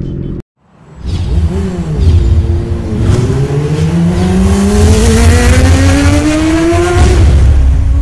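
An engine sound effect in an intro sting. After a sudden cut to silence, an engine runs up hard, its pitch climbing steadily for about four seconds before breaking off about a second before the end. A heavy rumble and a rushing hiss sit underneath.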